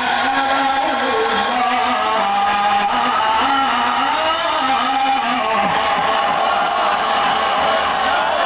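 A man's voice in melodic Quran recitation through a microphone, holding long, wavering notes that fall away about five and a half seconds in. Then many voices in the audience call out in approval.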